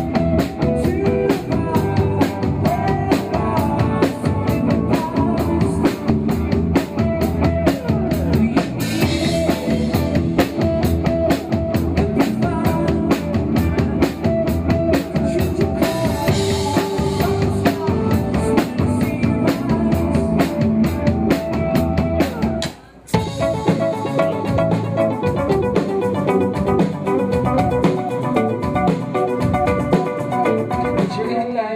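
Band music with a full drum kit and guitar playing a steady beat. About 23 seconds in it breaks off for a moment and a different, lighter piece with less drum and bass starts.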